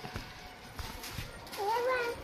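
A short, high-pitched vocal whine near the end, rising and then held for about half a second, over faint background noise with a few light taps.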